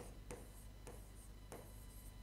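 Marker pen writing on a whiteboard: a few faint, short strokes as the numbers and letters are written.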